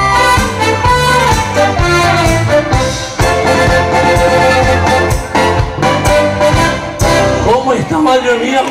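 A live dance band plays a pasodoble, with brass and saxophone over a steady pulsing bass line. The band stops just before the end.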